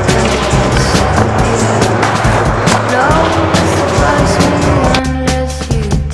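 Loud music soundtrack with a steady beat; its dense, noisy texture thins out about five seconds in.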